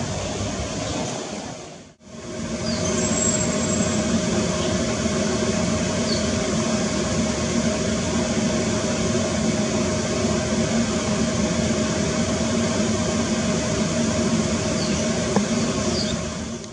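Steady mechanical hum with a constant tone running under it, cutting out briefly about two seconds in and then resuming. A few faint, short high chirps sound over it.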